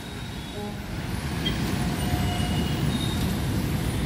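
Road traffic on a wet street: a steady low rumble of vehicles that grows a little louder over the first two seconds.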